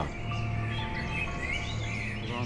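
Quiet background score of held, sustained notes, with a few faint high chirps over it in the second half.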